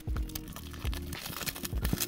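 Background music with sustained notes, over the crinkling and small clicks of clear plastic shrink-wrap being slit with a knife and peeled off a cardboard box.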